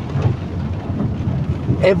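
Steady low road and engine rumble inside a moving vehicle's cabin, with rain pattering on the bodywork and windscreen.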